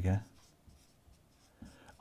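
Whiteboard marker writing on a whiteboard: faint strokes of the felt tip, clearest about three-quarters of the way through.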